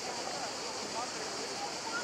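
Distant, indistinct voices of people talking, over a steady high-pitched hiss.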